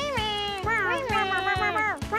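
Cartoonish cat meowing voiced for a costumed cat character: a few drawn-out meows that rise and fall in pitch. Background music with a steady beat plays under them.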